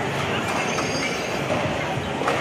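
Skateboards rolling on a smooth concrete floor, a steady rumble with a few sharp clacks, and a high thin squeal lasting under a second near the middle.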